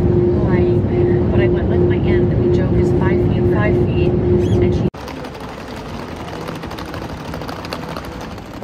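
Airliner cabin noise in flight: the steady low rumble of engines and airflow with a constant hum, faint voices over it. About five seconds in it cuts to the quieter bustle of an airport terminal.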